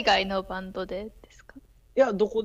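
Speech over a video call: a voice talks for about a second, then a short quiet pause.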